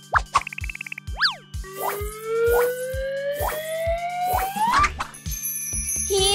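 Playful children's background music with a steady beat, overlaid with cartoon sound effects. A short warbling tone and a quick up-and-down boing come first, then a long, slowly rising whistle-like glide that sweeps up sharply near the end.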